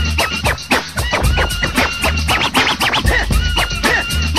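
Old-school hip hop beat with a heavy bass line and drums under turntable scratching. A quick run of scratches comes about halfway through.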